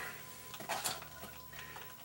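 A few faint clicks and light rustling as hands handle a stiff leather holster rig, working the hammer thong onto the holstered revolver.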